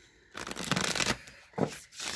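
A deck of oracle cards being shuffled by hand: a burst of rustling card noise starting about half a second in and lasting under a second, then a short knock near the end.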